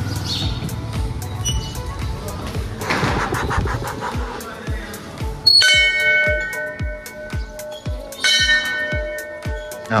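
Brass Hindu temple bell struck twice by hand, about halfway through and again some three seconds later, each strike ringing on with a clear, slowly fading tone over background music with a steady beat.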